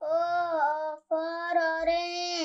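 A child's high voice singing two long held notes, breaking off briefly about a second in.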